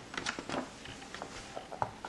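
A page of a hardcover picture book being turned and pressed flat by hand: a few short paper rustles and light taps, with a sharper click near the end.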